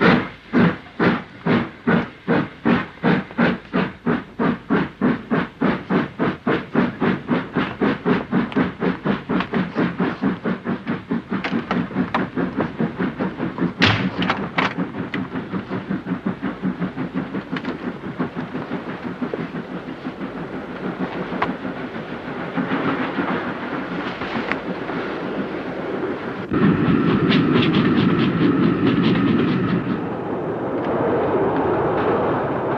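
A steam train pulling away: the locomotive's chuffs start about two a second and quicken steadily until they blur together as it gathers speed. Near the end a louder, steady running rumble takes over.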